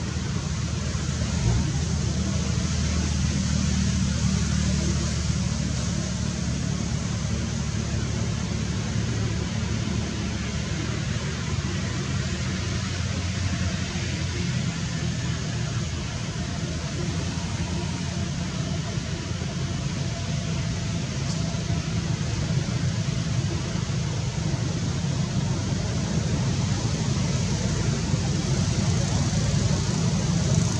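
Steady low rumble of a running engine, with an even hiss above it.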